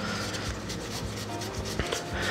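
Stack of Magic: The Gathering trading cards rubbing and sliding against one another as they are flipped through by hand.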